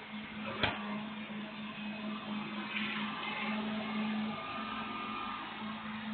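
Grapple truck working at the curb, heard through a security camera's microphone: a steady mechanical hum with one sharp knock a little over half a second in.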